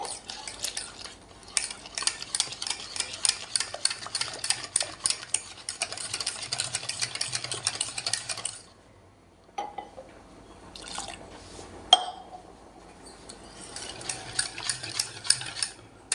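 Wire whisk beating a thin flour-and-water batter in a stainless steel bowl, rapid steady strokes with the wires rattling against the bowl. The whisking stops about halfway through, there is a sharp clink about three-quarters of the way in, and the whisking starts again near the end.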